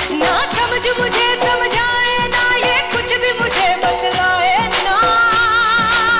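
A woman singing a Hindi film song, backed by a band with a steady beat. Her voice comes in at the start, and in the second half she holds long notes with vibrato.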